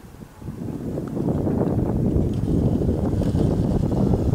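Wind buffeting the microphone: a loud, gusting low rumble that comes in about half a second in and keeps going.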